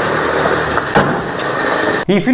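Steady rushing noise of outdoor news footage, with one sharp knock about a second in.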